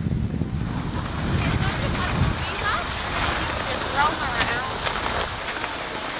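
Wind buffeting the microphone with a low rumble for the first two seconds or so. Then high-pitched children's voices chatter and call out in short bursts.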